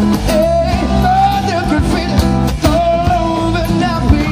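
Live rock band playing a song: strummed acoustic guitar and drums under a singing voice holding a wavering melody line.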